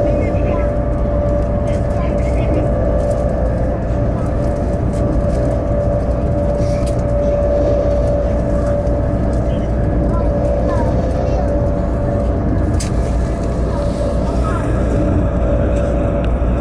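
Steady rumble of a train running at speed, heard from inside the carriage, with a constant hum running under it.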